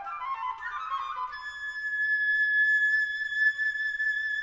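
Solo flute playing a quick run of notes that climbs into one long, high held note, which swells louder and holds.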